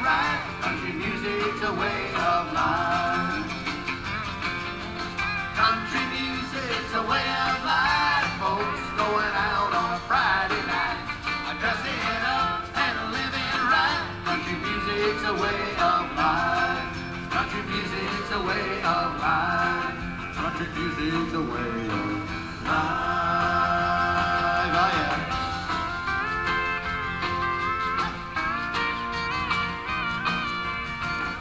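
Country band playing live, an instrumental passage with a sliding, wavering lead melody over the full band.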